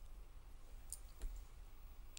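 Two faint, short clicks about a second in, over a low steady hum.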